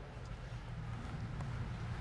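Faint, muffled hoofbeats of a horse cantering on grass, over a low steady rumble.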